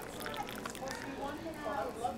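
Indistinct chatter of several overlapping voices, like a café crowd, with no words clear.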